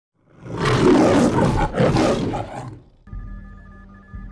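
A loud, harsh roar in two surges that dies away about three seconds in. It is followed by quiet electronic tones that pulse on and off over a low hum.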